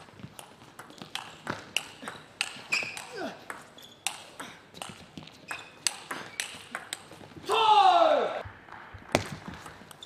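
Table tennis ball clicking sharply off bats and table in a quick, uneven rally. About seven and a half seconds in comes a loud shout with a falling pitch from a player, the loudest sound, and then the clicking of play starts again.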